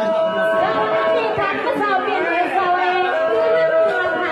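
A woman singing a Shan song into a microphone over a PA, the melody drawn out in long held notes, with people chattering underneath.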